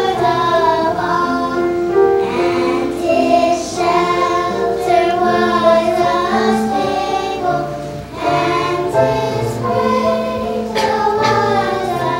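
A children's choir singing a Christmas song in unison phrases, with held low accompaniment notes underneath.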